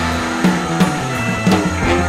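Instrumental psychedelic rock with electric guitar, bass and drum kit: sustained low bass notes under guitar, with drum hits falling several times.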